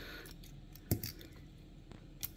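Small die-cast toy parts being handled, quiet but for faint ticks and one sharp light click about a second in as the pieces touch.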